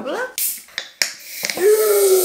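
A can of strawberry Chupa Chups soda is cracked open with a sharp pull-tab click and hissing, and the fizzy drink foams over the top of the can in a strong, continuing hiss.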